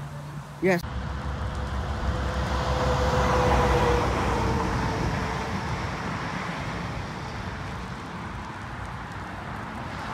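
Highway traffic: a vehicle's engine and tyre noise with a steady drone swells to its loudest about three and a half seconds in, then slowly fades as it passes.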